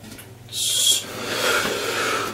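A man blowing out a hard breath about half a second in, then a longer breathy exhale with a hollow 'hoo' sound.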